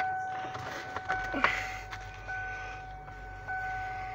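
The car's dashboard warning chime repeating about once a second, each tone ringing on into the next, over the low hum of the freshly started engine idling.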